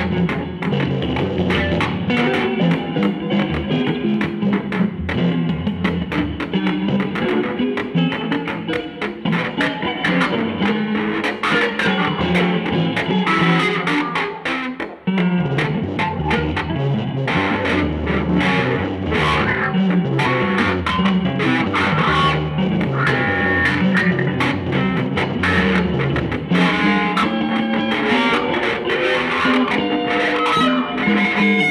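Two electric guitars playing an improvised samba duet, the picked notes and chords of both interleaving. The music breaks off briefly about halfway through, then comes back in with strong low notes.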